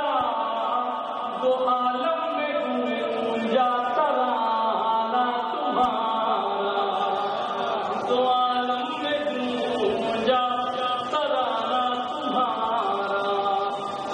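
A man's voice chanting lines of an Urdu devotional poem to a melody, with long held and gliding notes.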